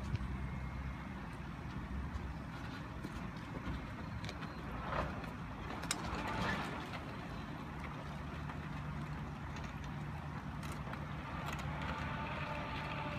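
Parked vehicles' engines idling, a steady low hum, with a few faint clicks.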